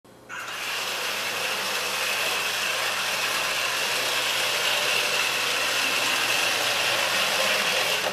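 Drive motors and gearboxes of an iRobot Create robot base running steadily as it drives along a wood floor, a continuous whirring with a high whine, starting a moment in.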